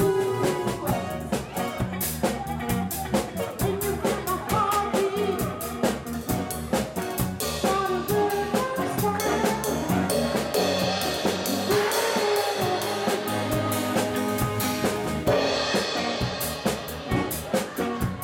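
Live band music: a drum kit keeps a steady, busy beat under guitar and other melodic instruments.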